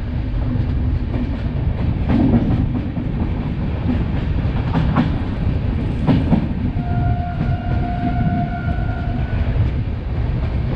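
Passenger train running at speed, heard from inside the coach: a steady rumble with wheels clacking over rail joints about 2, 5 and 6 seconds in. A steady tone sounds for about two seconds near the end.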